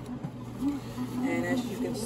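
Bread machine's motor running with a low, steady hum as the paddle works the dough during the mixing stage, with a brief faint voice over it about a second and a half in.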